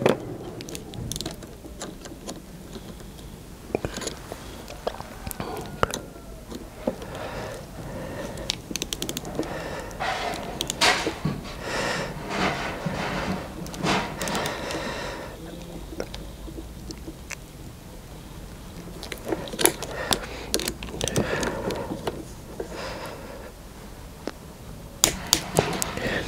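A ratcheting click torque wrench (Wera Click-Torque) tightening cable-lug bolts on a battery terminal to 8 newton metres: irregular clicks from the ratchet and tool, with short stretches of scraping.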